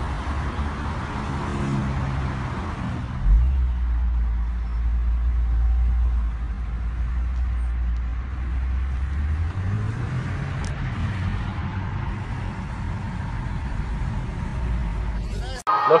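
Road traffic with a voice in the first seconds, then from about three seconds in the steady low rumble of a car's engine and road noise heard from inside the cabin, rising briefly in pitch near the middle.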